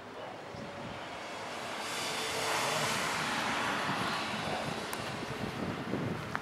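A vehicle passing on the street, its road noise swelling to a peak about halfway through and then fading.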